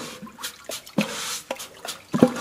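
Matachines dancers' wooden bows and hand rattles: irregular sharp clacks, some with a brief ringing tone, over a rattling hiss.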